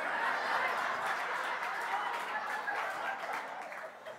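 Comedy-club audience laughing at a punchline: a swell of crowd laughter that gradually dies away.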